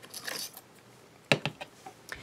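Metal tweezers picked up from a craft table among other small tools: a sharp click a little over a second in, followed by a couple of lighter ticks, over faint handling rustle.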